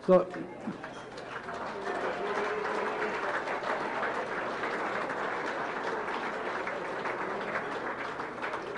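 A roomful of diners applauding, with many voices chattering over the clapping. The applause builds up about a second in and keeps going steadily.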